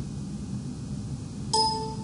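A computer notification chime: a short, pitched electronic tone about one and a half seconds in, over faint room hiss.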